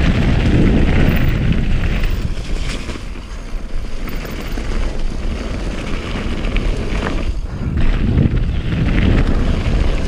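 Wind buffeting the microphone: a loud, low rumbling roar that surges and eases, dipping briefly about three seconds in and again about seven and a half seconds in.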